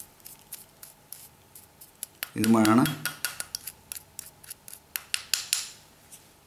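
A plastic spoon scraping and tapping against a ceramic bowl in quick, irregular clicks while mixing a damp powder into a paste.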